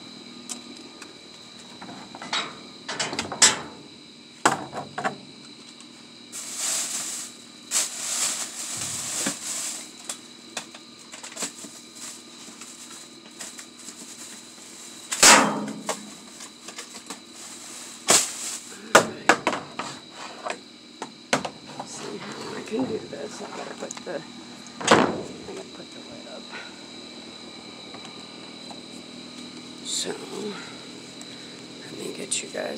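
Sharp knocks and bangs against a metal dumpster, with stretches of plastic trash bags rustling as a reacher-grabber pokes through them. A faint steady high whine runs underneath.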